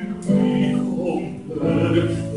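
A baritone singing long held notes with grand piano accompaniment in a classical art song, with a new note or chord coming in shortly after the start and again near the end.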